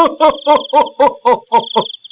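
A man laughing in a rapid, even run of 'ha-ha-ha' pulses, about six a second.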